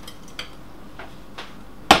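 A glass bowl clinking lightly a few times against a steel saucepan as grated cheese is tipped out of it, then one sharp knock near the end.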